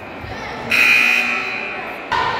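A basketball game signal: a steady, high-pitched tone that starts suddenly about two-thirds of a second in and fades away over about a second, in a reverberant gym.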